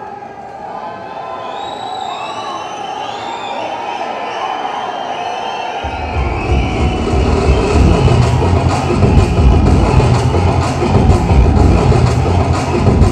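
Crowd cheering and whistling, growing louder, then loud music with a heavy bass beat comes in about halfway through and plays over the crowd.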